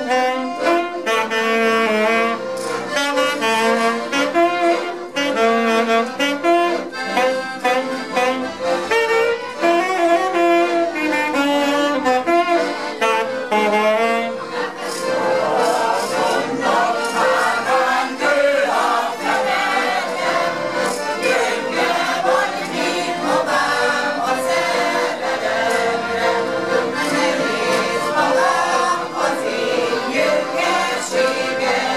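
Two accordions and a saxophone playing a lively Hungarian nóta tune. The sound grows noticeably fuller from about halfway through.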